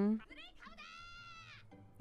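A person's drawn-out voice ends just after the start. Then comes faint anime soundtrack audio: a cartoon character's high-pitched, bleat-like squeal, which rises and arches for about a second over quiet background music.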